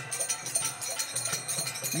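Kirtan accompaniment without voice: small brass hand cymbals (kartals) ringing and a hand drum beating a quick, steady rhythm.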